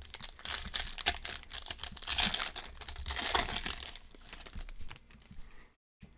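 A 2020 Panini Select football card pack's foil wrapper being torn open and crinkled by hand, a dense crackling that is loudest in the middle and dies away about five seconds in.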